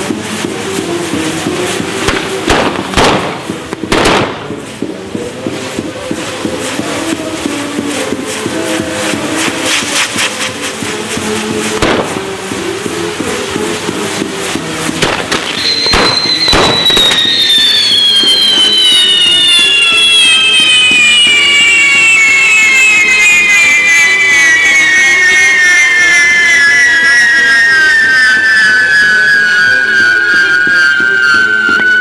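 Castillo fireworks tower going off: sharp bangs and crackles a few seconds in, again around twelve seconds and about sixteen seconds in, with music underneath. From about sixteen seconds in, a loud whistle with a slowly falling pitch takes over and lasts to the end.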